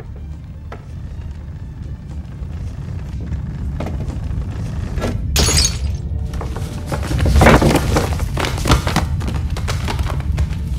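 Film sound effects: a deep rumble of an approaching stampede building steadily louder, with a plaster bust crashing and shattering on a wooden floor about five seconds in, then more heavy crashes and thuds, over dramatic music.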